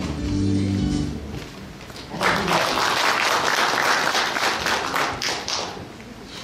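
Background guitar music fades out about a second in. About two seconds in, audience applause starts and goes on for about three and a half seconds before dying away.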